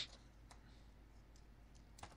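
Near silence with a low steady hum and a few faint clicks.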